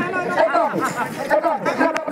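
Speech: a person talking, with crowd chatter behind.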